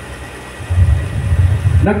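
Loud low rumble on a handheld microphone, starting about two-thirds of a second in and running on unevenly, with a man's voice starting to speak near the end.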